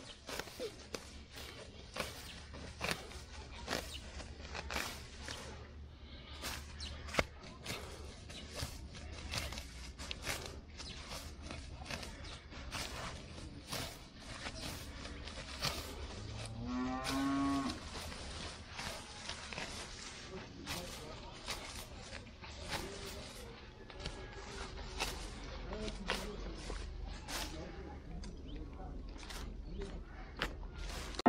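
Fresh grass being cut by hand with a sickle: a run of short sharp snaps and rustles as the stalks are gripped and sliced. A cow moos once about halfway through.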